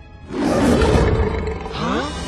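A lion's roar, loud, breaking in about a third of a second in and held, with film music beneath it.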